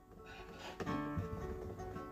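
Acoustic guitar playing softly: strummed chords ringing, with a few notes picked out from about a second in.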